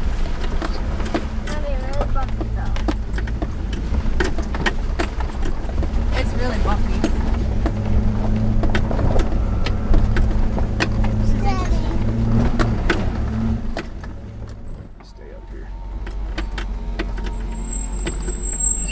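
Land Rover Discovery II's V8 running at a slow crawl, heard from inside the cab, with frequent knocks and rattles as the truck works over a rocky trail. The engine drone drops away for a moment about fourteen seconds in, then picks up again.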